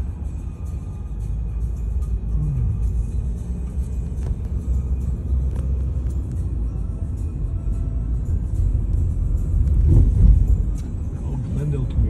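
Low road and engine rumble inside a moving car's cabin, swelling briefly about ten seconds in.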